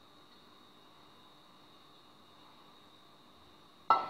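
Very quiet kitchen room tone with a faint steady high hum, then, just before the end, one sharp clink as kitchenware is set down.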